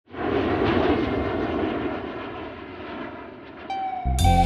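A rushing, noisy ambience that swells in at the start and slowly fades away, with no clear pitch. Near the end a held musical note enters as the song begins.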